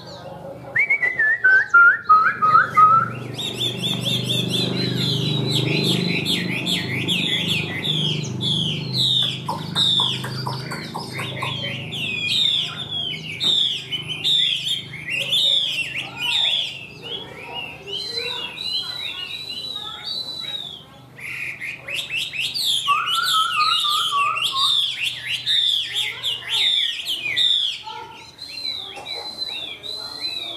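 Chinese hwamei singing a long, continuous, varied song of rapid loud whistled phrases, with descending runs of notes about a second in and again about two-thirds of the way through.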